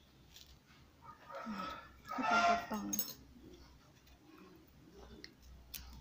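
A short vocal sound about a second in, pitched and wavering, lasting under two seconds, followed by a few faint light clicks.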